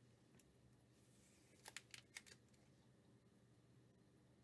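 Near silence with a low steady hum, broken near the middle by a quick run of about five faint plastic clicks as a trading card is handled and put into a clear rigid plastic card holder.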